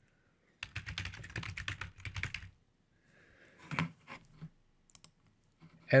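Typing on a computer keyboard: a quick run of keystrokes lasting about two seconds, then a few separate clicks a little later.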